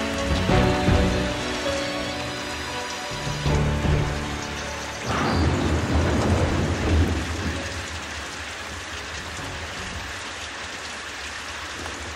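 The last held chords of a pop song over the sound of rain. About five seconds in the music stops and a rumble of thunder breaks, leaving steady rain.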